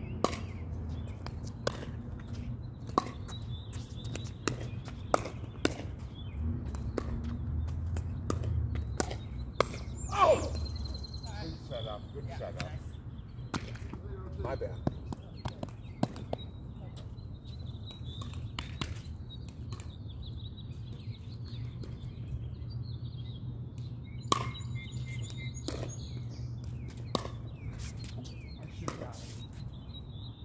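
Pickleball paddles striking a plastic ball in a doubles rally: sharp pops at uneven intervals, the loudest about ten seconds in. Birds chirp faintly over a steady low hum.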